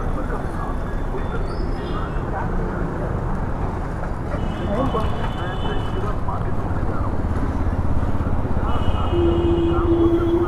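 Street traffic noise at a busy crossroads: a steady rumble of passing motor vehicles with background voices, broken by short high beeps about halfway through and again near the end, where a steady low tone also comes in.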